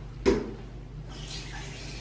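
A single sharp knock, then water running from a bathroom sink tap and splashing into the basin over the second half.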